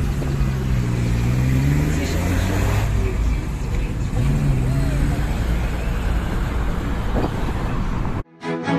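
A 1951 Studebaker Champion's flathead six-cylinder engine pulling away, its note rising twice as it accelerates, over a steady rumble of street traffic.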